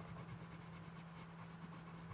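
Faint scratching of a Crayola colored pencil shading back and forth on drawing paper, over a low steady hum.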